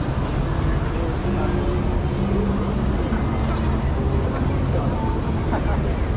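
Street ambience at a busy road crossing: traffic running past with a steady low rumble, mixed with the voices of a crowd of pedestrians.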